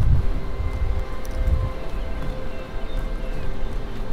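Wind buffeting the microphone, an uneven low rumble, under soft background music with long held notes.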